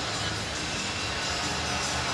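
Music from the arena's sound system over a steady hubbub of crowd noise during the stoppage in play.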